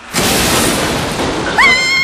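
Crash sound effect for a car's frontal crash test: a sudden loud, noisy impact that fades out over about a second and a half. Near the end a high-pitched scream of fright cuts in.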